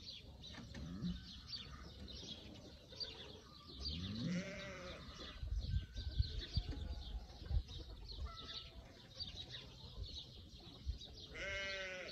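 Farmyard animal calls: short low grunts and a rising call about four seconds in, then a longer, high bleating call near the end, over small birds chirping throughout.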